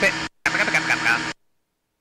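Speech only: a voice talking in two short phrases, the sound dropping to dead silence between them and after about a second and a half, with no engine noise underneath, as with a voice-activated aircraft intercom.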